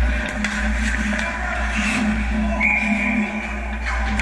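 Ice hockey play at close range: skates scraping on the ice and sharp clacks of sticks and puck over a steady low rink hum. A brief steady high tone sounds a little before the three-second mark.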